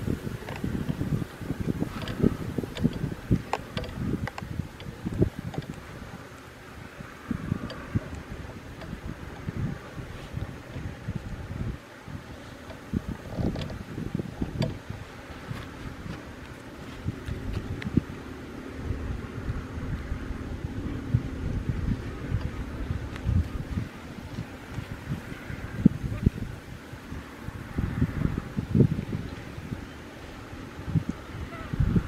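Wind buffeting the microphone in uneven gusts, with scattered small clicks and rustles.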